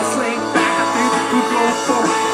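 A rock band playing live, an instrumental passage with electric guitars over bass and drums, with sustained notes and some sliding pitches.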